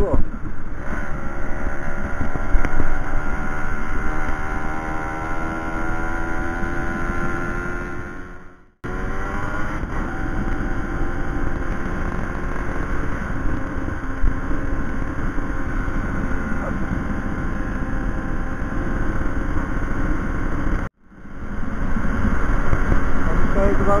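Two-stroke 50 cc single-cylinder engine of a 1992 Aprilia Classic 50 Custom moped running under way, its pitch rising slowly as the moped picks up speed over the first several seconds, with wind noise underneath. The sound cuts out abruptly for a moment twice, about 9 and 21 seconds in.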